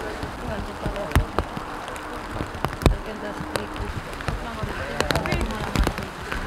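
Indistinct chatter of a group of people, with scattered sharp taps and knocks.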